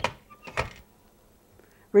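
Two short knocks of metal kitchen equipment being handled, about half a second apart.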